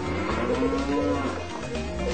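A cow in heat mooing once, a long low call that rises and then falls slightly in pitch, over background music.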